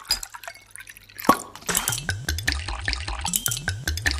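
Percussive music: a few sparse clicks, then, about a second in, a quick rhythmic pattern of sharp clicks and short low thumps that drop in pitch starts up and runs on.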